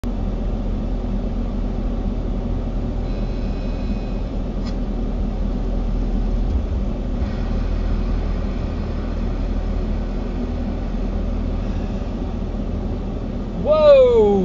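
Steady low road and engine rumble heard inside a car's cabin, moving at about 18 mph. Near the end a person's voice breaks in with a loud exclamation.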